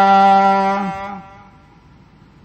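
Harmonium holding one steady, reedy note between sung lines of Sikh kirtan. The note fades out about a second in, leaving only a faint hush.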